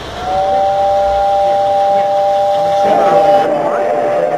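S gauge model train locomotive whistle blowing a steady two-note chord, sounding just after the start and held without a break.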